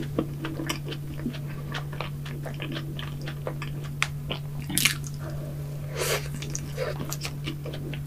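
Close-miked chewing and wet mouth clicks of a person eating whipped cream and donut, with a few louder mouth sounds about four, five and six seconds in. A steady low hum runs underneath.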